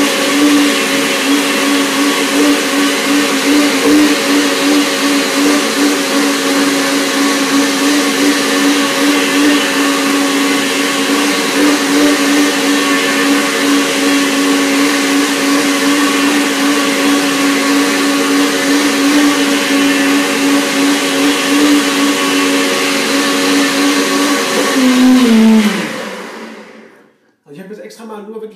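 Countertop blender motor running steadily, blending bananas, avocado, wild herbs and a little water into a smoothie; it winds down with a falling pitch and stops about 25 seconds in.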